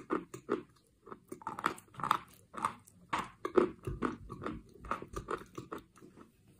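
Chalk coated in clay paste being bitten and chewed close to the microphone: an irregular run of dense, crisp crunches, with a brief pause about a second in.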